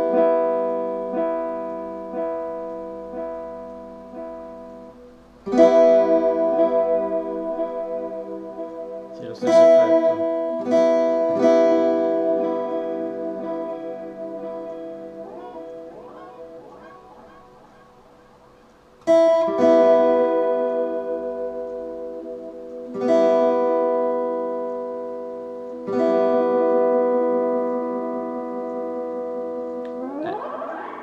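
Steel-string acoustic guitar strummed in single chords, each left to ring and fade for a few seconds before the next. The chords come in a slow, loose sequence, with a long fading pause in the middle.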